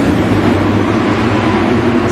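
A pack of 250cc four-stroke supercross bikes running hard together at the start of a race, a dense, steady mix of engine noise with no single bike standing out.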